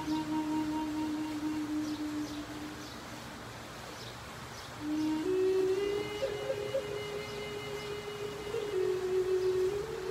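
Wooden end-blown flute playing a slow melody. A long held low note fades out about three seconds in; after a short lull, a new note starts about five seconds in, steps up and is held with small ornaments, then rises again near the end.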